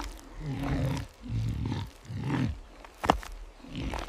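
Three low, growling animal calls, each under a second long, one after another, followed by a couple of sharp clicks near the end.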